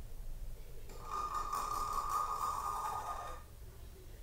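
A long audible breath out through the mouth or nose by a person holding a seated forward fold. It is a breathy rush that starts about a second in and lasts about two and a half seconds.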